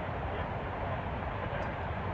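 Steady rushing of water pouring down the Oroville Dam spillway, an even continuous noise with no breaks.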